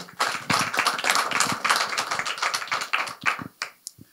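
Audience applauding: a dense patter of hand claps that dies away just before the end.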